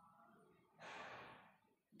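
Near silence with one soft breath, a short sigh-like exhale about a second in.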